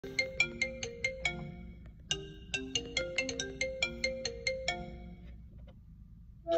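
A phone ringtone: a bright, plinking melody of quick struck notes in two phrases, with a short break between them, stopping about a second before the end. It is a call ringing just before it is answered.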